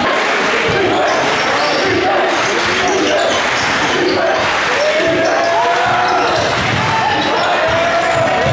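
A basketball being dribbled on a hardwood gym floor, under the steady chatter and calls of many spectators' voices.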